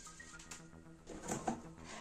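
Light clicks and knocks of wires and parts being handled on a workbench, over a faint steady hum.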